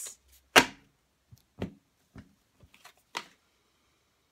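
Tarot cards being shuffled and drawn by hand: one sharp snap of card stock about half a second in, then a few soft clicks and ticks.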